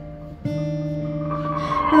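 Acoustic guitar played in a gap between sung lines: a chord rings and fades, then a new chord is strummed about half a second in and rings on.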